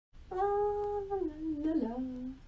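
A voice humming a short tune: a long held note that then steps down in pitch, note by note, to a lower one.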